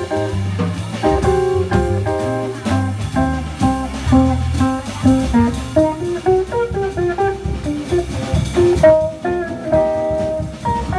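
Small live jazz combo: a hollow-body archtop electric guitar plays a melodic line over a plucked upright double bass and a drum kit with cymbals.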